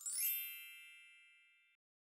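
A bright chime sound effect: a single shimmering ding that rings and fades, then cuts off suddenly after under two seconds.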